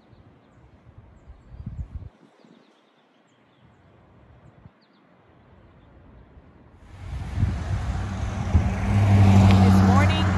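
Faint outdoor quiet with a brief low rumble of wind on the microphone and a few faint high chirps. About seven seconds in it cuts to much louder roadside traffic, with a motor vehicle going by in a steady low engine hum.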